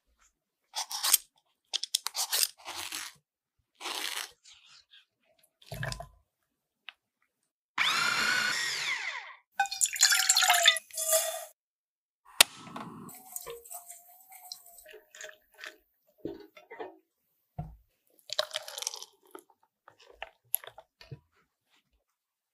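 A series of kitchen handling sounds: short clicks and taps of steel ring moulds, a tray and a bowl being handled. About eight seconds in there is a longer noisy stretch of a second and a half.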